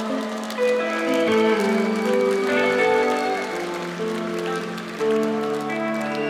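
Live rock band playing a slow instrumental passage: sustained chords with electric guitar notes over them, changing every second or so, with no singing.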